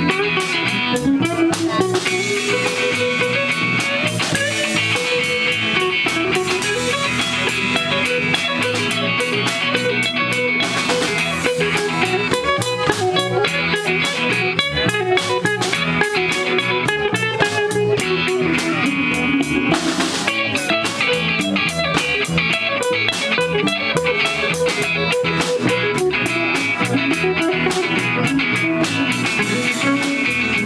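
A live surf rock band playing an instrumental: two electric guitars through small amps, electric bass and a drum kit with cymbals, keeping a steady driving beat.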